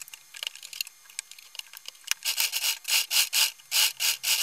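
Stretchy knit fabric rubbed and slid across a sewing machine's bed by hand, heard as short scraping strokes. The strokes come in two groups of about three a second in the second half, with scattered light clicks before them.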